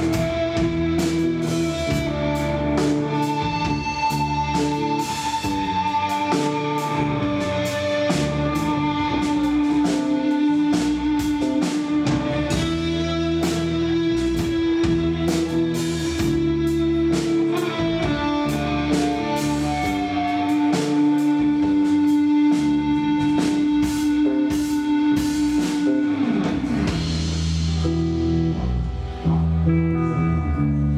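Live psychedelic rock band playing an instrumental passage: electric guitar over a drum kit, with one note held for long stretches. Near the end the pitch slides down, and the music breaks off briefly before coming back in.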